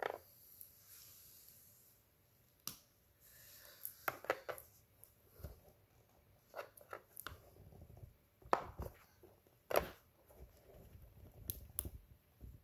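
Plastic MC4 solar-panel connectors being handled and pushed together by hand: irregular clicks and knocks of hard plastic, with a few sharper clicks as the locking connectors snap home.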